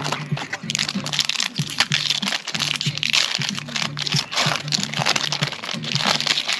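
Foil booster-pack wrapper crinkling and crackling as it is handled, in dense irregular crackles, over background music with a low bass line.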